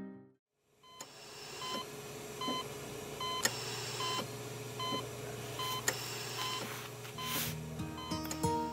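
Hospital patient monitor beeping at a steady, even pace, roughly one beep every 0.7 seconds, over a low steady hum. The beeping starts after a moment of silence, and soft guitar music comes back in near the end.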